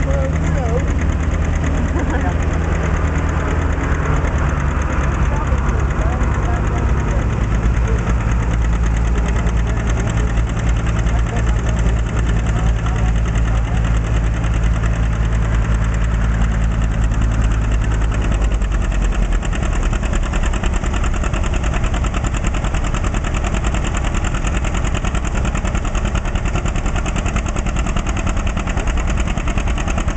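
John Deere 720 diesel's two-cylinder engine running hard under load while pulling a weight-transfer sled, with a steady low note. About eighteen seconds in the low note drops away as the pull ends, and the engine runs on more quietly.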